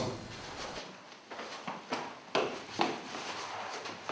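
Four soft knocks and scuffs, about half a second apart, of a person dropping down against a stairwell wall onto the stair steps after a push.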